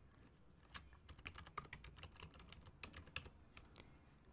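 Faint computer-keyboard typing: a quick, irregular run of keystrokes as an email address is typed.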